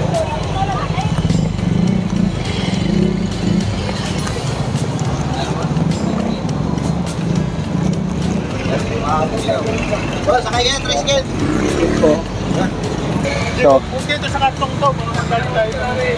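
Busy street ambience: a steady low rumble of motorcycle and tricycle engines, with scattered voices of passers-by, more of them in the second half.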